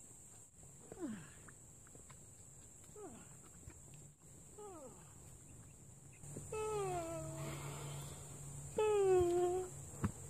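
Two drawn-out voiced calls, each about a second long and sliding slowly down in pitch, one past the middle and a louder one near the end, after a few short, quick downward-sliding squeaks.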